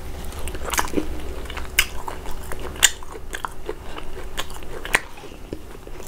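Close-miked eating sounds: a mouthful of fufu dipped in peanut soup being chewed, with sharp wet mouth clicks and smacks at irregular moments, the loudest about three seconds in and again just before five seconds.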